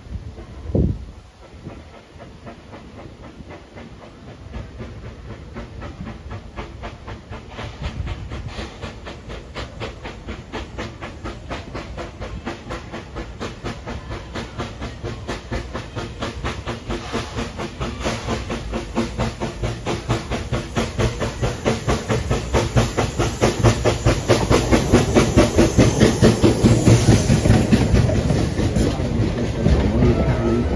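Edison #1, a 4-4-0 steam locomotive, approaching and passing: its exhaust chuffs in a quick, even beat that grows steadily louder as it comes near, with steam hiss. As the open passenger cars roll by near the end, their wheels clatter on the rail joints. A brief thump sounds about a second in.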